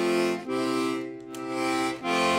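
Castagnari Rik diatonic button accordion sounding left-hand chords on the stop that removes the bass and leaves only the tenor triad. There are two held chords, with a short break about half a second in.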